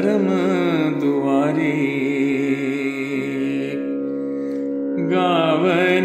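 A Sikh devotional shabad sung over a steady drone. The voice wavers through an ornamented phrase, holds one long note, drops out for about a second while the drone carries on, and comes back near the end.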